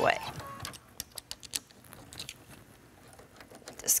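Faint scattered clicks and small taps of hands handling a Brother sewing machine's presser-foot area while taking off the embroidery foot.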